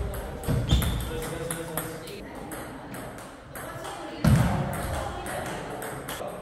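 Table tennis rally: the ball clicking off the paddles and table in quick succession, with two louder bursts, about a second in and just past four seconds.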